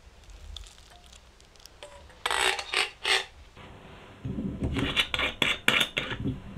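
A whisk scrapes creamed butter and sugar around a stainless steel bowl in three loud strokes about two seconds in. Then comes a quicker run of short rubbing and crinkling sounds as hands twist and peel the red seal off a bottle of vanilla extract.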